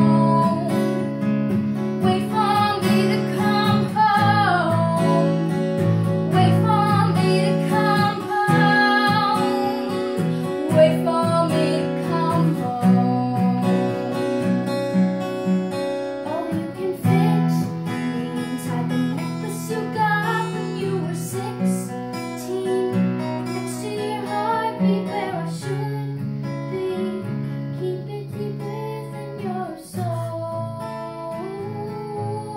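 Acoustic guitar played as accompaniment to singing, a duet song performance with chords held and changed every second or two and a melody line wavering above.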